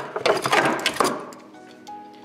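Knocks and clatter of a fiber-reinforced plastic battery tray being handled and lifted out of an engine bay during the first second, over steady background music.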